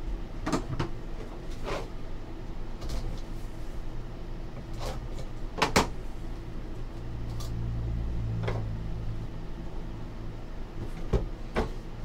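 Hands handling a small cardboard trading-card box and its cards on a table: scattered knocks, taps and rustles as the box is picked up, opened and the cards are slid out. The loudest knock comes a little past the middle, followed by a low rumble for a couple of seconds.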